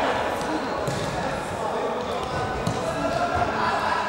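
Futsal ball thudding on a hard indoor court as it is kicked and dribbled, with voices calling out, all echoing in a large sports hall.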